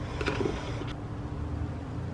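A plastic scoop clicking lightly a few times against the inside of a plastic tub of collagen powder as it is dug in, over a steady low hum.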